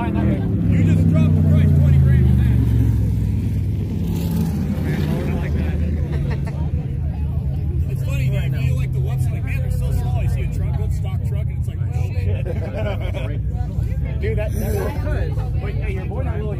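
Side-by-side UTV engine passing at speed across the sand, loudest in the first few seconds with its pitch falling as it goes by, then fading to a steady low engine drone.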